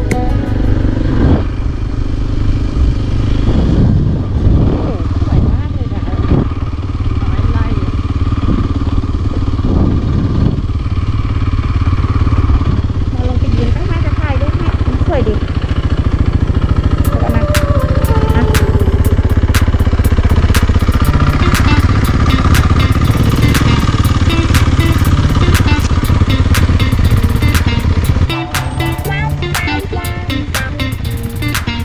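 Motorcycle engine running while riding, with music playing along. In the second half it grows louder and a run of sharp clicks comes in.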